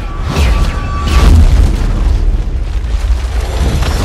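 Cinematic trailer sound design: deep booming bass hits over a constant low rumble, layered with the score. There are several hits in the first second and a half and another near the end.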